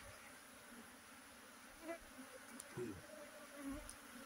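A swarm of honeybees clustered on a tree branch buzzing faintly, with a few bees passing close by in brief, louder hums.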